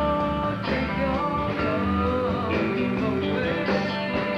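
Rock recording with electric guitar playing a lead line of bent, sliding notes over a steady bass and band backing.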